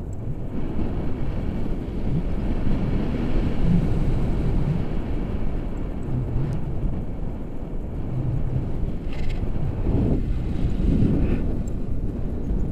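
Airflow buffeting the camera microphone in flight under a tandem paraglider: a steady low rumble that swells and eases a little.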